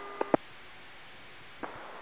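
Airband radio channel between transmissions: a faint steady hiss, with a few brief clicks in the first half-second as one transmission ends and another click shortly before the next transmission begins.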